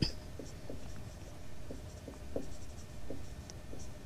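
Faint scratching of writing as the working of a maths problem is written out by hand, in short irregular strokes.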